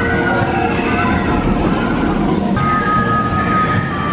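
Steel launch roller coaster train running along its track, a dense rumble of wheels on steel rails, with a steady high tone joining over the last second and a half as the train sweeps close by.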